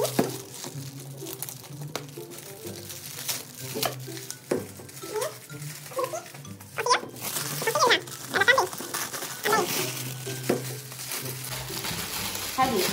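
Metallic foil wrapper of a large chocolate Easter egg crinkling and tearing in a run of sharp crackles as it is pulled open by hand, with background music underneath.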